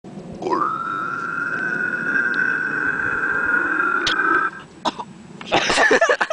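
A young man's voice sliding up into a high falsetto squeal that is held for about four seconds and then breaks off. Near the end comes a short loud scuffle and thump as the Indo balance board slips out from under him and he falls onto the mat.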